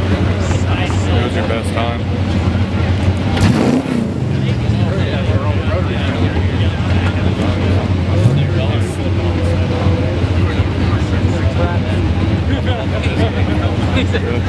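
Cars' engines idling at a drag strip starting line, a steady low hum, with one engine revved up briefly about three and a half seconds in and again, more lightly, about eight seconds in. Spectators talk over it.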